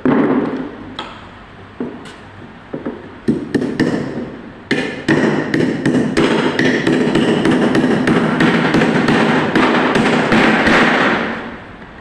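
Claw hammer driving nails into the timber battens of a wooden shuttering box: a few spaced blows, then a fast steady run of blows from about five seconds in that stops shortly before the end.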